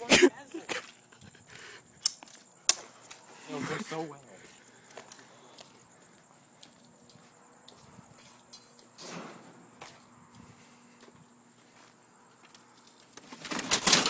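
Mostly quiet, broken by a few sharp clicks in the first three seconds and short stretches of voices and laughter, one about four seconds in and a louder one near the end.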